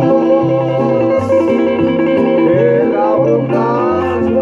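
Two nylon-string classical guitars playing together: chords under a moving picked line, at a steady level.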